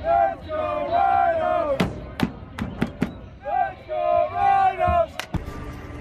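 Soccer supporters shouting a chant in two long, drawn-out phrases, with a few sharp hits between them.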